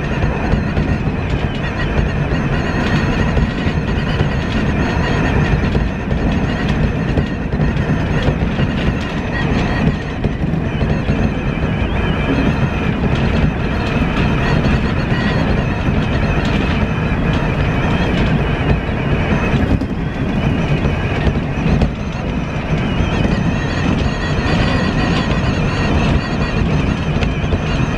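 Tobu Isesaki Line electric train running at steady speed, heard from inside the front car: a continuous rumble of wheels on rail with steady high tones above it.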